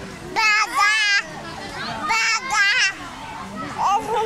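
Young children's playful, wordless high-pitched voices: two loud squealing bursts of about a second each, wavering in pitch, with softer voices between them.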